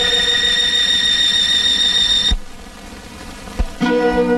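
Old Tamil film-song orchestral music: a long held high note that cuts off abruptly a little past halfway. A brief quieter gap with a single click follows, then the music comes back near the end on a new sustained chord.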